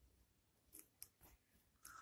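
Near silence, with a few faint, short scratches of a pen writing on paper.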